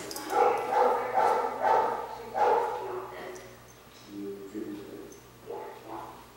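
Gordon Setter puppy giving a run of short, high whining yips for the first two and a half seconds or so, then fainter, lower sounds.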